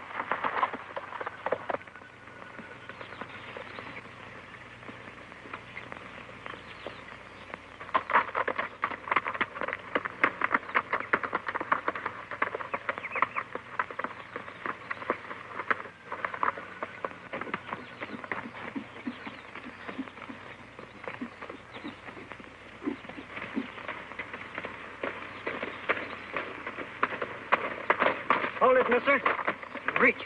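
Horse hoofbeats as a rider rides at speed over rough, rocky ground: a fast, irregular clatter of hooves. It comes in two main runs, one starting about eight seconds in and another from about eighteen seconds on.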